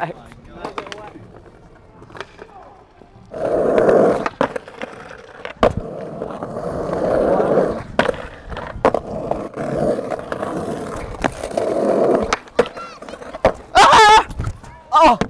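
Skateboard on stone ledges: wheels rolling and the board sliding along the ledge in several passes of a second or two each, broken by sharp clacks of the board popping and landing on the stone. A voice calls out near the end.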